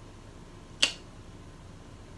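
A single short, sharp click a little under a second in, against quiet room tone.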